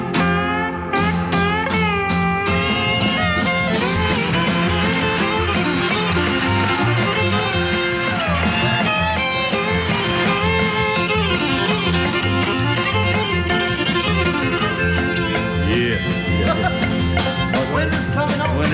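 Country band instrumental break between verses: a fiddle plays the lead over strummed acoustic guitar and a steady bass line. It opens with a run of plucked, ringing string notes.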